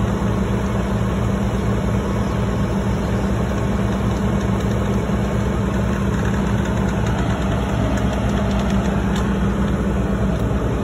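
Heavy diesel engine of a concrete pump truck running steadily at idle: a constant low drone with a fast, even pulse.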